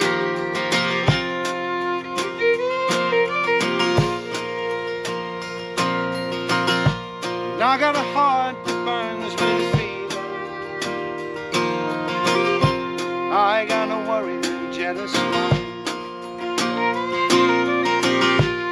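Instrumental break of a folk song played by a live acoustic trio: a fiddle carries a wavering melody over strummed acoustic guitar, with a Gretsch drum kit keeping a steady beat.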